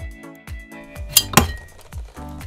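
Two sharp metallic clinks, a fifth of a second apart, as metal engine parts knock together, over background music with a steady beat.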